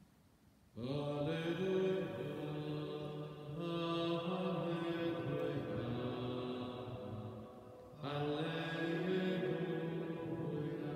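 A priest's male voice chanting a liturgical melody solo, in slow phrases of long held notes that step from pitch to pitch. A second phrase begins about eight seconds in.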